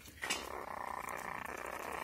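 A young civet gives a steady raspy hiss for about two seconds, starting a moment in, while it feeds on a rat.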